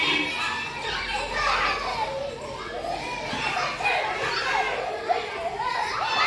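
A group of young children shouting and calling out at play, many voices overlapping.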